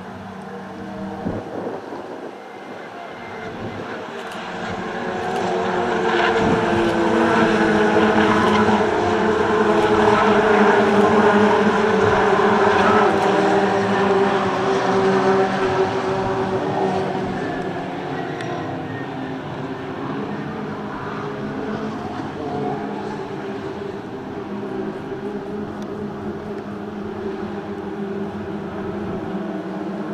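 A pack of Peugeot 208 race cars driving past on the circuit, several engines at once. The sound builds over the first ten seconds, peaks with the engine pitch falling as the cars pass, then carries on at a lower, steady level as they go away.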